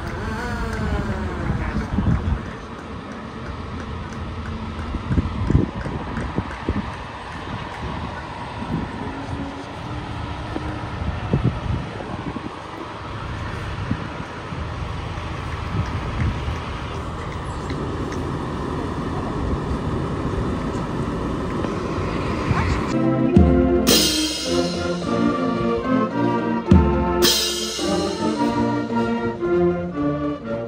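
Fire trucks rolling slowly past with their engines rumbling, and a siren winding down at the start. About two-thirds of the way in, a brass marching band starts playing, with two loud crashes.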